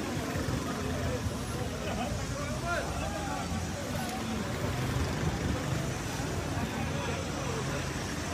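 People talking and calling out, over a steady low rumble of outdoor noise.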